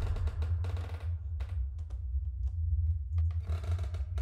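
Low steady drone of a horror trailer's suspense sound design, with sparse faint clicks and ticks scattered over it.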